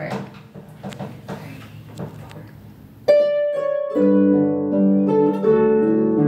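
Two harps begin a duet: after about three seconds of faint clicks and rustling, a single plucked note rings out, and a second later several notes and chords sound together and ring on.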